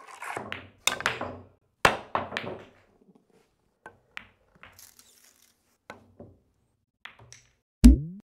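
A series of sharp knocks and taps: two loud ones in the first two seconds, then a few quieter ticks, and a heavy, deep thump near the end.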